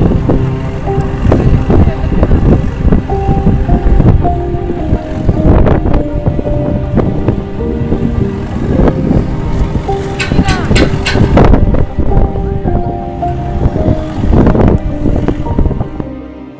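Wind buffeting the microphone aboard a moving boat, a heavy low rumble, with music playing over it in held notes that change pitch every second or so.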